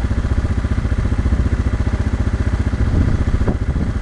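Firefighting helicopter's rotor beating steadily: a fast, even, low pulsing.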